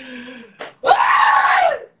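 A man's voice in a loud, drawn-out yell: a short cry first, then a louder one lasting about a second that falls in pitch at its end.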